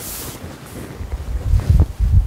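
A sponge being wiped across a chalkboard gives a brief swishing at the start. Then comes low rumbling and a few dull bumps near the end as the lecturer moves and bends down.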